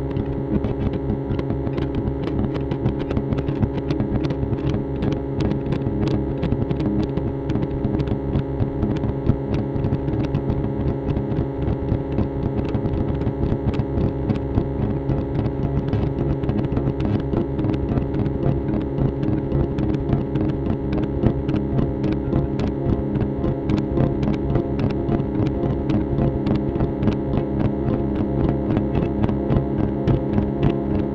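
Electric guitar played through effects pedals in free improvisation: a dense, droning wall of held tones with rapid repeated attacks throughout, steady in level.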